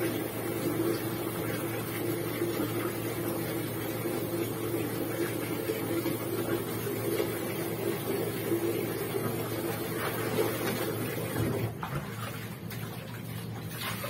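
A steady mechanical hum from a small motor or fan runs under faint rustling of wet laundry being handled. The hum drops away about twelve seconds in, and near the end there are a few light splashes as clothes are wrung over a plastic basin.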